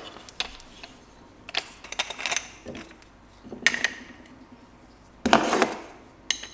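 Small metal clinks and knocks from changing the disc on an angle grinder: a spanner wrench on the flange nut and flap discs being handled and set down on a wooden workbench. The knocks come scattered and irregular, the loudest cluster near the end.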